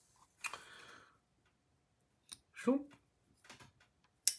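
Titanium folding knife on ball-bearing pivots being worked open and shut, giving a few sharp detent and lockup clicks late on. A brief breathy sound comes about half a second in, and a short wordless voice sound near three seconds.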